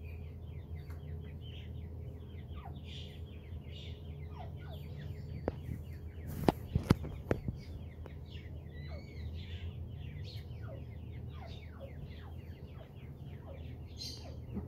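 Grey francolin (grey partridge) chicks peeping continuously, a rapid string of short, high, falling chirps, over a steady low hum. A few sharp clicks stand out about six and a half to seven and a half seconds in.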